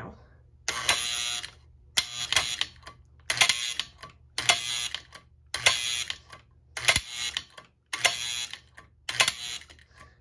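Vintage toy train operating accessory, its electric mechanism buzzing in short bursts about once a second as the red bin is worked from the remote control button. It is running properly after a misplaced spring and parts inside were put right.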